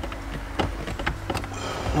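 A few light clicks and knocks from a Pioneer double-DIN head unit being pushed and worked into its dash fascia, which won't seat fully. A low steady hum lies underneath.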